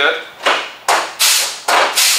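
Pneumatic flange tool working along the edge of the fender's sheet steel: a run of quick strokes, about two a second, each a sharp snap trailing off in a short rush of air. Each stroke presses a stepped flange into the panel edge so the patch piece can overlap it.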